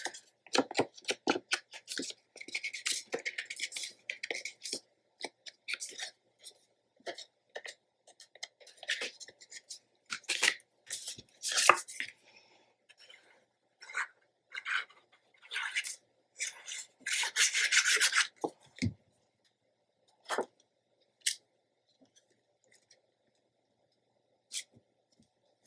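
Cardstock and patterned paper being handled and rubbed on a cutting mat: intermittent rustles, scrapes and light taps, with a longer rustle about seventeen seconds in, then mostly quiet near the end.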